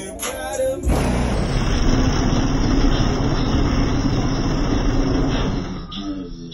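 A car's bass-heavy sound system playing music loudly. About a second in it turns into a loud, dense wash of sound that lasts until near the end, then drops away.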